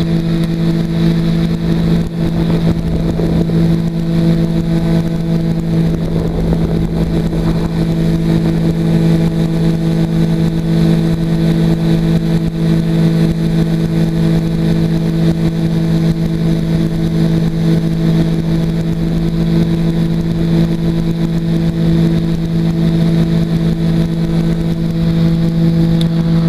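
Weight-shift trike's engine and pusher propeller running at a steady, unchanging pitch in flight, with wind rush underneath.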